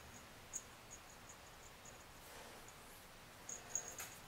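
Near silence: quiet room tone with a series of very faint, short, high-pitched chirps or ticks at irregular intervals, bunched in the first two seconds and again near the end.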